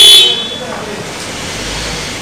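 A vehicle horn sounding very loudly and cutting off just after the start, followed by the steady noise of a vehicle moving past, with a low rumble near the end.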